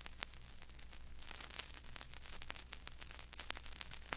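Faint static-like hiss with scattered small crackles over a steady low hum.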